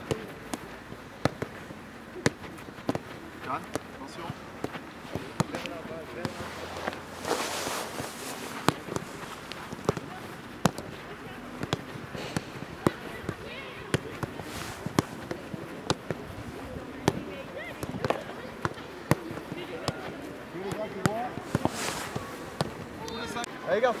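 Footballs being kicked and passed by several players on artificial turf: many short, sharp kicks at an irregular pace, over faint voices of children.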